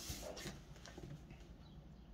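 Quiet room with faint handling of a tarot card deck and card: a few soft rustles in the first half-second, then little more than room tone.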